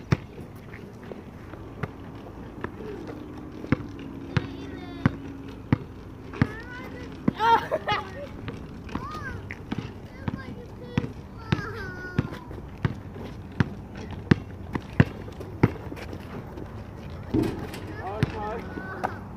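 A basketball dribbled on asphalt: a steady run of sharp bounces a little more than one a second. Short shouts and laughter from the players come in between.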